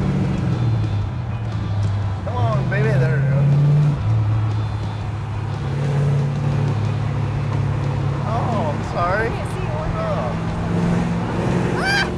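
1967 Plymouth GTX's 426 Hemi V8 with dual four-barrel carburetors accelerating on the road, its exhaust note rising in pitch and dropping at a gear change about four seconds in, then pulling steadily. Brief voices are heard near three seconds and near nine seconds.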